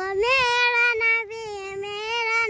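A young girl singing long held notes in a high voice, close to the microphone; the note dips and softens about a second in, then carries on.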